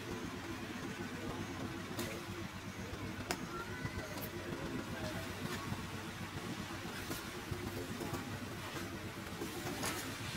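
Steady low background rumble with a faint constant hum, broken by a handful of sharp clicks spread through it.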